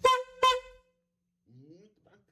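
Two short honks of an edited-in horn sound effect, about half a second apart, the loudest sounds here.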